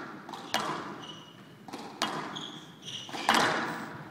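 Squash rally: sharp cracks of racket hitting ball and ball hitting the walls, three in four seconds and ringing in the hall, the loudest near the end. Short high squeaks of the players' shoes on the court floor fall between the hits.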